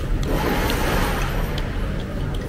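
Steady low rumble of background noise in a busy eatery, swelling and easing over the first second, with a few faint light clicks.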